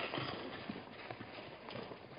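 Hoofbeats of a wildebeest herd moving over the ground: many irregular thuds that grow fainter.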